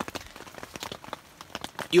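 Rain falling on a tent's rain fly, heard as a dense scatter of small, irregular ticks.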